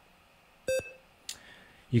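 One short electronic beep from the smartphone check-in app as it reads the QR code printed on a race bib, the sign of a successful scan that assigns the bib number.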